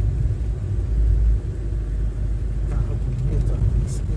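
Low, steady rumble of city traffic heard from a moving vehicle, with wind buffeting the microphone; it is heaviest about a second in. A short click comes near the end.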